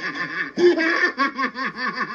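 Laughter: a quick run of pitched 'ha' pulses, about five a second.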